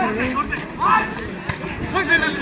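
Voices calling out over a volleyball rally, loudest just before a second in. There is one sharp smack of a hand on the volleyball about a second and a half in.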